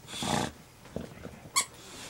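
A bulldog gives a rough, noisy grunt lasting about half a second. About a second and a half in comes a brief high-pitched squeak, the loudest moment.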